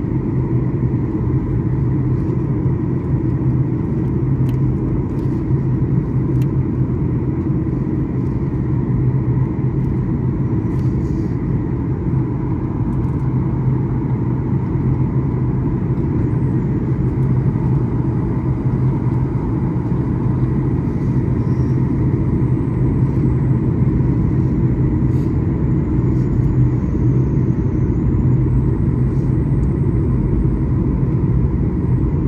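Steady low rumble of a jet airliner's engines and airflow heard inside the passenger cabin during descent, with a faint steady hum on top.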